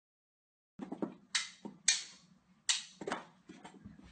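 Knee hockey being played: a quick, uneven string of sharp clacks and knocks from mini hockey sticks and the ball, starting abruptly about a second in.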